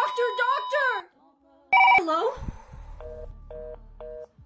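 A steady electronic flatline beep of a heart monitor under shouting cuts off about a second in. After a spoken 'Hello?', a telephone rings in short pulses, about two a second.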